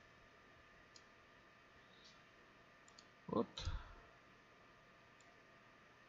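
Faint computer mouse clicks: several single clicks spread out over a few seconds.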